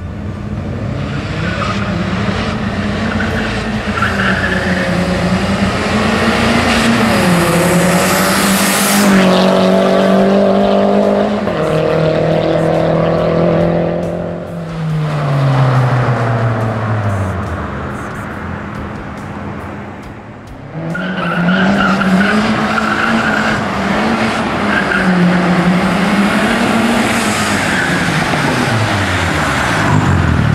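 Small car's engine running hard at speed, its pitch rising and falling with the revs, then falling steeply away twice, the second time near the end.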